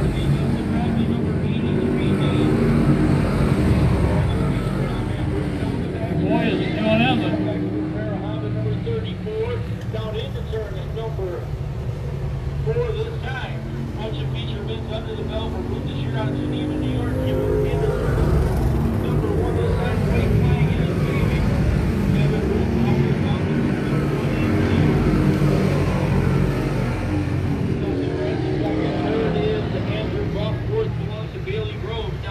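Sportsman-division dirt-track race cars running laps around the oval: a steady engine drone that swells and fades a little as the pack goes round, under indistinct voices.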